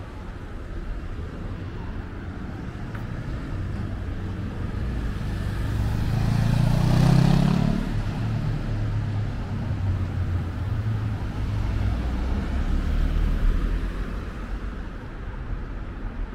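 A motor vehicle passes close by, its engine and tyre noise swelling to a peak about seven seconds in and then fading, over a steady background of street traffic.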